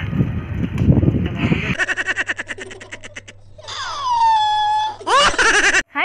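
Wind buffeting the microphone while cycling, then from about two seconds in an added laughing sound effect: a rapid stuttering run of laugh-like pulses, a long falling tone and two quick rising whoops.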